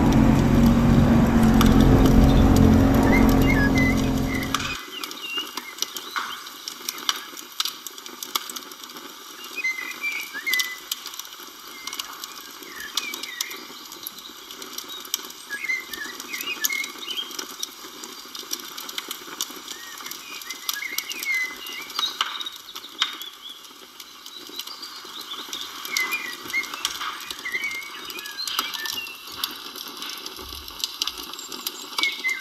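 A small boat's motor running with wind and water noise, cutting off abruptly about five seconds in. After that, birds chirp every few seconds over a quiet background with scattered light clicks.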